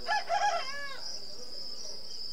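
A rooster crowing once in the first second, over the steady high chirring of crickets.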